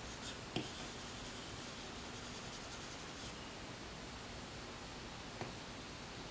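Stylus tip rubbing across the iPad Pro's glass screen in soft brush strokes, faint and steady, with a light tap about half a second in and another near the end.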